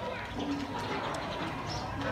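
Quiet ambience of a near-empty street, with a faint short low bird call about half a second in.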